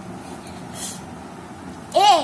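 Steady background hum, with a short hiss a little under a second in; right at the end a high voice gives a short call that falls in pitch.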